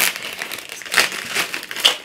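Plastic mailer bag crinkling as it is handled and pulled open, with two sharper crackles, about a second in and near the end.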